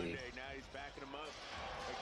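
Basketball game broadcast audio, quieter than the reactor's voice: a basketball bouncing on the hardwood court under a commentator's voice.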